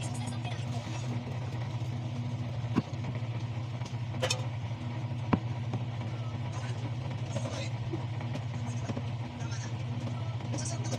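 A steady low mechanical hum, with light handling noises and two sharp clicks about three and five seconds in.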